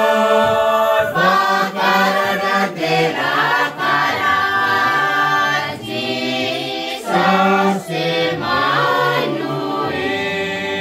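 A mixed group of men and women singing a carol together, unaccompanied, in long held notes sung in phrases.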